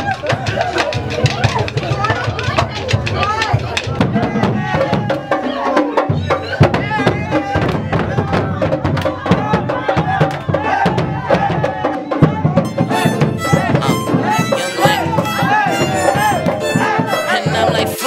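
Drum-heavy music: a fast, dense run of drum strokes over a heavy low end, with voices over it.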